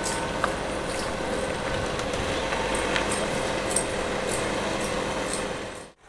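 Steady outdoor hum of distant city traffic, with a few faint high clicks and chirps; it cuts off abruptly just before the end.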